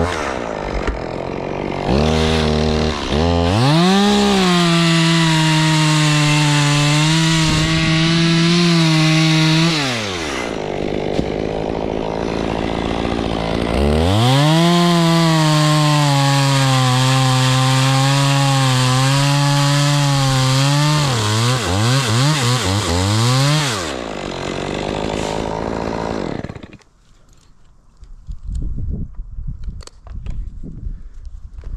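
Stihl two-stroke chainsaw cutting through oak at full throttle in two long cuts, dropping back to idle between them. Near the end it is blipped a few times, idles briefly and then stops.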